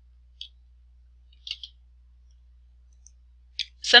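Computer mouse clicking: two short clicks about a second apart, then a faint third, over a low steady hum.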